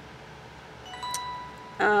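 About a second in, a soft, short chime-like ring sounds with a faint click, fading out in under a second.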